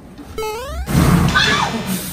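A short rising whistle-like tone, then about a second in a loud crash and rattle of plastic ball-pit balls as a person lands in a deep ball pit, with a voice crying out during the landing.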